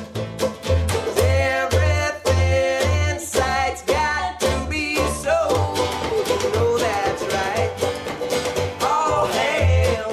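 Live acoustic string-band folk music: a man singing over a strummed archtop guitar and a picked banjo, with an upright bass plucking a steady beat.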